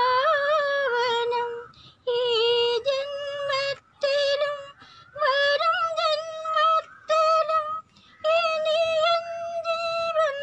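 A single high voice singing a melody in short phrases, with brief near-silent gaps between them and no backing that stands out.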